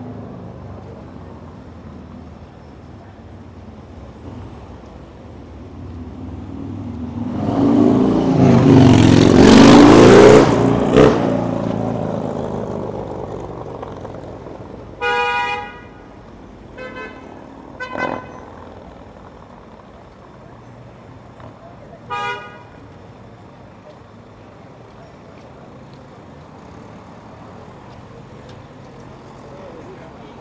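Road traffic: a loud motor vehicle passes close by, building over a few seconds, peaking and then fading. After it, car horns honk four times: one longer honk, then three short ones.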